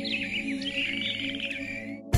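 Soft ambient music of steady held tones, layered with a nature recording of high, quick chirping animal calls.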